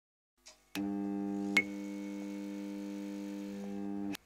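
A steady electronic hum made of several held tones at once, switching on with a click just under a second in. About a second and a half in, another click brings a short, higher tone.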